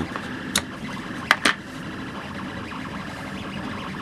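A few sharp plastic clicks and knocks as a hard 3D-printed plastic case is handled and set down on a wooden table, over a steady faint hum.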